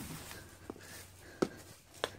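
A few faint knocks and clicks, the sharpest about one and a half seconds in, over quiet background noise.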